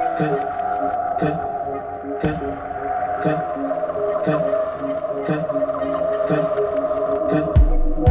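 Electronic background music in a breakdown: sustained synth chords and a stepping melody over a faint tick about once a second, with no deep kick drum until it comes back near the end.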